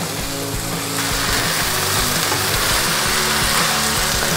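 Loud sizzling in a hot frying pan as string beans are tipped in onto stir-frying chicken and sauce; the hiss sets in about a second in and holds steady. Background music plays underneath.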